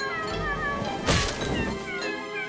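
Cartoon background music with a run of short falling notes, and a sudden crash about a second in.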